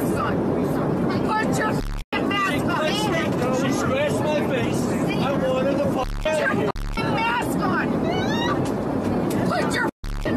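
Several people shouting and arguing over one another in an airliner cabin, with the steady hum of the cabin underneath. The sound cuts out completely for an instant about two seconds in.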